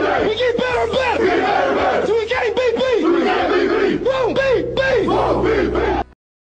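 A football team shouting a chant together, many voices yelling at once in a rally cry after the team prayer, loud and rhythmic. It cuts off suddenly at the end.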